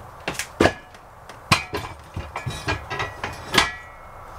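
A Bolt It On motorcycle tie-down bar, fitted with wheel chocks, being set down and positioned on the trailer floor: a series of sharp knocks and clanks, some with a brief ring, the loudest near the end.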